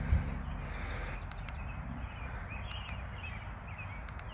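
Outdoor ambience: a few short bird chirps over a low, steady rumble, with one thump just after the start.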